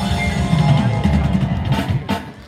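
A live band playing loud amplified music, with drum kit and electronic keyboards.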